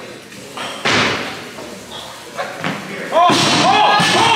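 A loud slam about a second in, then a heavy thud near the end as a weightlifter catches a barbell snatch on the platform. Onlookers break into shouting and cheering.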